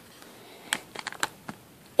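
A few light, sharp clicks and taps, about five in under a second, from fingers pressing and shaping a lump of modelling clay on paper close to the microphone.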